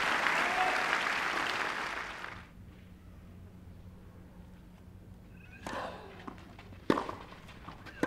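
Crowd applause fading out over the first two and a half seconds, then near quiet with a few short knocks of a tennis ball bounced on a clay court before a serve, the sharpest about seven seconds in.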